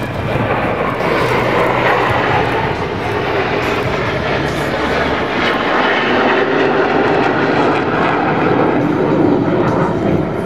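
Jet engines of a formation of four fighter jets flying past in a display, a loud, steady noise.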